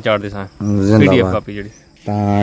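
A man's voice speaking for about a second and a half, over a steady chirring of crickets at night; the voice stops near the end, leaving the crickets.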